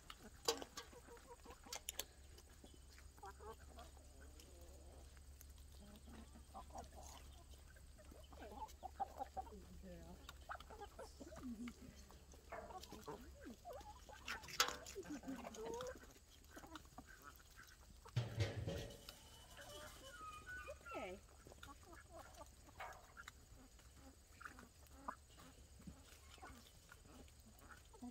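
A mixed flock of chickens and ducks clucking and calling faintly, in short scattered calls, as they feed. There is a dull thump a little past halfway.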